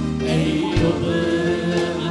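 Gospel worship song: a man singing a held, gliding melody into a microphone over instrumental accompaniment with a steady beat of about two strokes a second.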